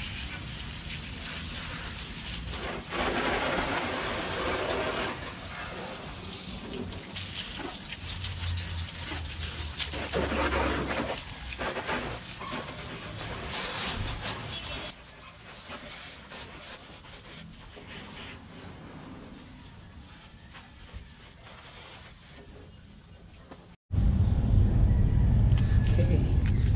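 Water spraying from a garden hose spray nozzle onto a car's wheels, wheel wells and lower body panels, the hiss of the spray rising and falling as it is moved around, quieter in the second half. Near the end the sound cuts abruptly to a louder low rumble.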